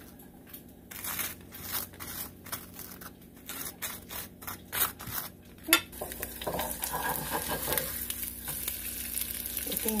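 A table knife scraping butter across dry toasted bread in quick repeated strokes, about two or three a second. About six seconds in, an egg frying in a nonstick skillet takes over, sizzling steadily.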